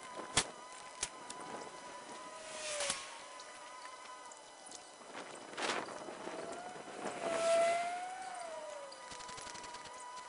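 Air rushing out of the Z-Pro Tango TA300 inflatable canoe's opened Boston valves as the canoe deflates. It comes in three rushes, the last the loudest, with a whistle that wavers up and down in pitch, and two sharp clicks come in the first second.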